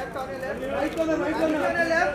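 Overlapping voices of a group of people talking and calling out over one another.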